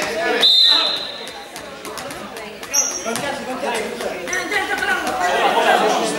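Players' voices chattering in an echoing gym hall, with a short high steady tone about half a second in.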